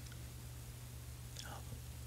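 Faint steady electrical hum and hiss from a voice-over microphone between spoken phrases, with a soft breath from the narrator near the end.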